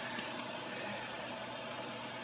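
Steady background noise with a faint hum, no distinct events.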